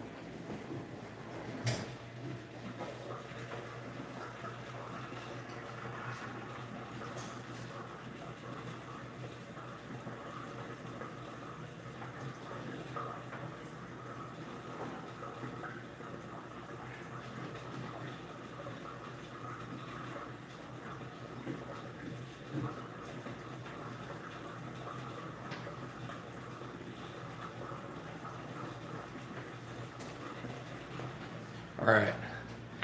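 Faint steady room hum, with a few soft knocks or clicks in the first several seconds.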